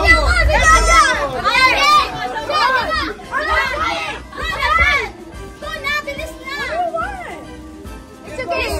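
Children and adults shouting and calling out excitedly in high, rising and falling voices, with music playing underneath.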